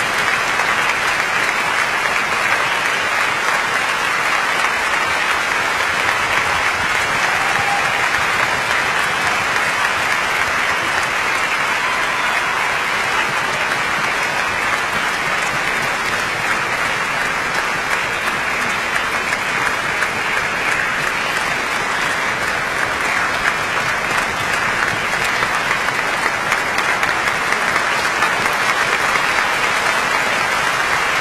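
Concert hall audience applauding steadily, a dense, even clapping that keeps going without a break.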